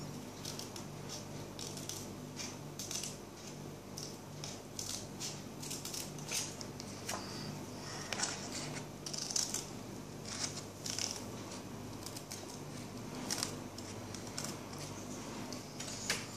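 Small scissors snipping through craft paper while cutting out circles: a run of short, crisp, irregular cuts, about two a second.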